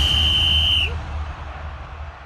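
A single long, steady whistle blast at the end of the show's theme music, stopping about a second in. A low rumble from the music then fades away.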